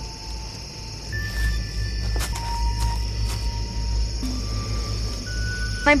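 Film background music of long, held notes that change every second or so, over a steady high chirring of crickets.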